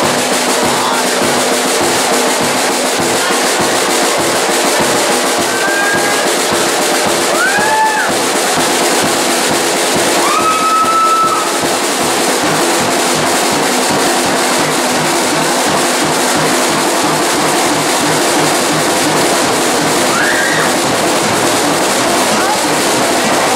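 Drum kit played fast and hard in a live solo: a dense, steady run of strokes with cymbals washing over them.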